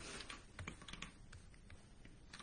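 Faint, irregular light clicks and taps of hands handling the recording device close to the microphone.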